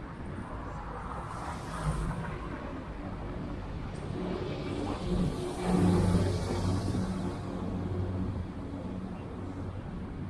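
A flatbed lorry driving past close by, its engine hum loudest about six seconds in and then slowly fading. Other street traffic runs underneath.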